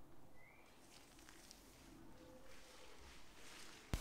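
Near silence: faint outdoor ambience with one brief, faint rising bird chirp about half a second in, and a short click just before the end.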